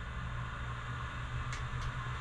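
Steady low hum and hiss of background noise, with one faint brief sound about one and a half seconds in.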